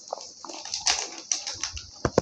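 Gift wrapping paper rustling and crackling as a present is torn open by hand, in a quick run of sharp crinkles. A short faint squeak comes just after the start.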